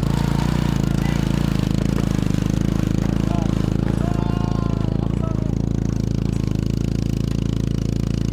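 Small motorcycle engine pulling a tuk-tuk carriage, held at steady high revs under load as the rig is pushed out of soft sand where it is stuck. A few short calls sound over it, about half a second and four seconds in.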